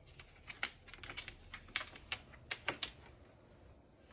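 A quick, irregular run of sharp clicks and taps, about a dozen within two and a half seconds.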